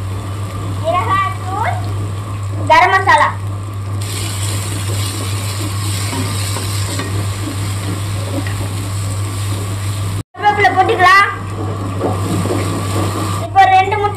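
Onion-tomato masala frying in a nonstick pan and being stirred with a wooden spatula. A faint high sizzling hiss is clearest for a few seconds near the middle.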